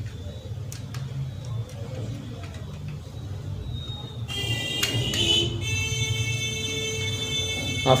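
A small screwdriver tightening wires into the screw terminals of a metal-cased switch-mode power supply: a few faint clicks over a steady low hum. About four seconds in, a cluster of steady high-pitched tones comes in and holds, louder than the screwdriver.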